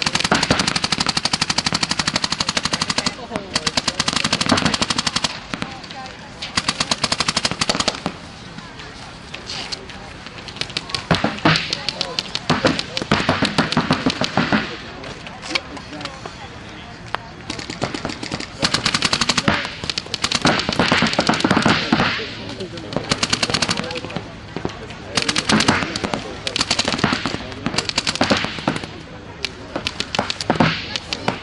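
Paintball markers firing rapid strings of shots, in bursts of about one to two seconds with short pauses between, again and again.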